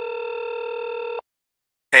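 A telephone ringing: one steady electronic ring tone that cuts off a little past halfway.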